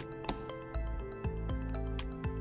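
Background music: sustained bass and chord notes over a steady beat of about two strokes a second.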